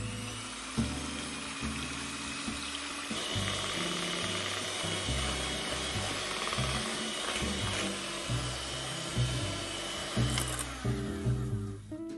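Electric hand mixer running steadily as its beaters whip heavy cream and sugar stiff in a glass bowl, until it stops about eleven seconds in. The cream ends up over-whipped.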